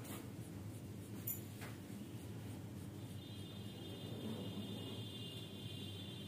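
Pen scratching on paper as a diagram is drawn and an electrode shape is hatched in with short strokes. A faint, steady high-pitched tone joins in the background about halfway through.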